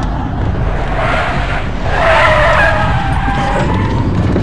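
Car tyres squealing through a right turn, starting about a second in and strongest after two seconds, over the car's steady engine and road rumble heard from inside the cabin.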